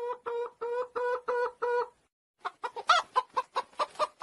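Hen clucking in a run of steady-pitched notes, about three a second, then, after a short pause, a faster string of shorter clucks, about six a second.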